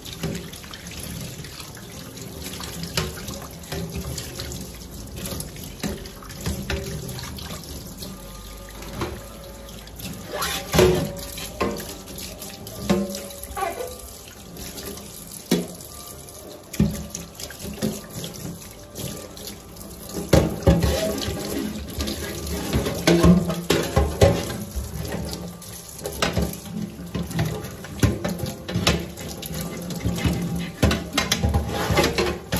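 Kitchen tap running into a stainless steel sink while metal range-hood grease filters are rinsed and scrubbed under the stream. Irregular clatter of the metal parts knocking against the sink, busier in the second half.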